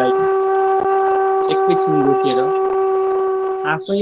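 Calm meditation music: a single long, steady held note with a soft voice speaking over it. The note stops near the end and the voice carries on.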